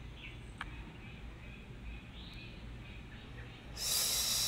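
Faint outdoor ambience with a few soft bird chirps and a single click about half a second in. Near the end a high insect buzz rises.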